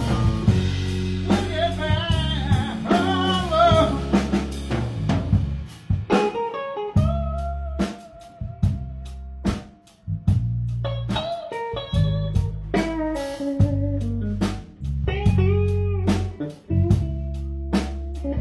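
Live blues trio: guitar playing lead lines with bent notes over bass guitar and a drum kit. The band drops out briefly a few times around the middle.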